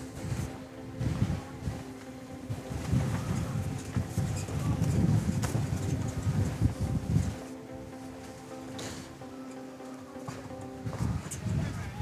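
Strong wind buffeting the microphone in gusts, with a steady eerie droning whistle underneath. The gusts ease about seven seconds in, while the drone carries on almost to the end.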